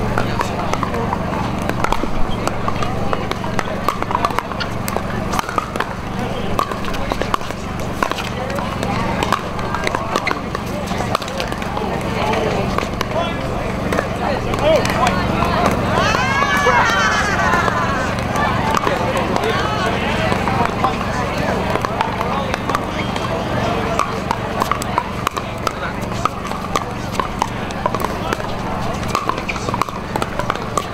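Pickleball paddles popping against a hollow plastic ball, sharp clicks repeating through rallies on this and neighbouring courts, over a constant babble of voices and a steady low hum.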